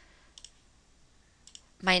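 Two faint computer mouse clicks about a second apart.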